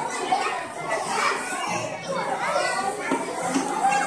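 Many young children chattering and calling out over one another.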